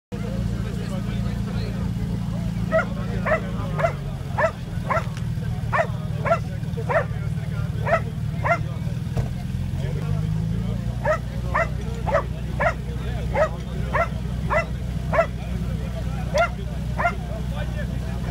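A dog barking over and over, about two barks a second, starting a few seconds in and pausing briefly midway, over the steady running of the portable fire pump's engine, whose pitch dips and rises a little.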